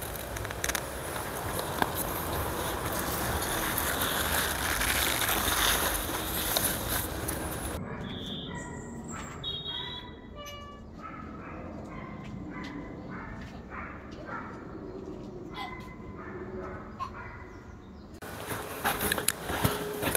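Rustling and scraping of soil and onion leaves as onions are pulled up by hand. About eight seconds in it gives way to a quieter background with birds chirping in short, high notes.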